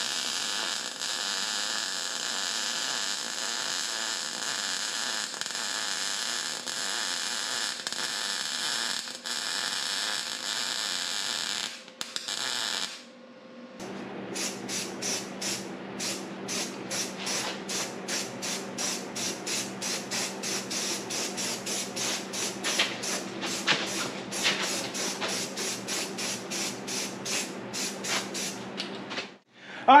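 Electric arc welding: a steady crackling hiss for about twelve seconds that stops abruptly. After a short pause, an aerosol spray-paint can hisses in a rapid series of short pulses over a low steady hum.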